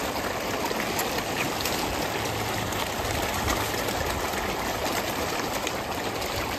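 Steady splashing of pond water churned by a dense crowd of koi thrashing at the surface, with small splashes scattered through it.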